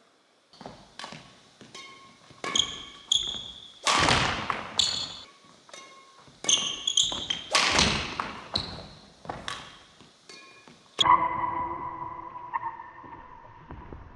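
Quick footsteps, thuds and sharp squeaks of court shoes on a wooden sports-hall floor during badminton footwork, echoing in the large hall. About eleven seconds in comes a louder knock followed by a ringing tone that fades away.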